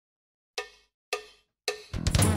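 A percussive count-in: three evenly spaced, short ringing strikes about half a second apart, then a fourth just as the band comes in, setting the song's tempo.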